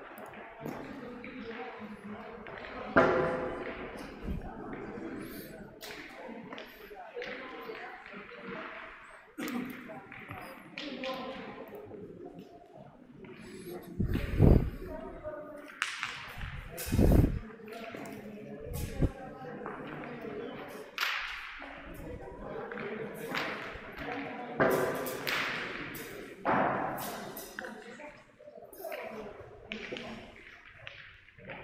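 Steel pétanque boules landing on the sanded ground: three heavy thuds around the middle, with lighter knocks scattered elsewhere, over the continuous chatter of players and spectators.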